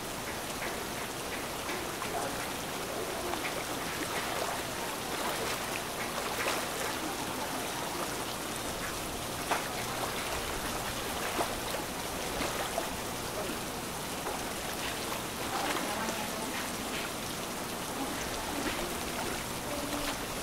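Steady rain falling, with scattered individual drops ticking sharply close by.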